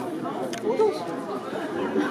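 Crowd chatter: many people talking at once, several voices overlapping.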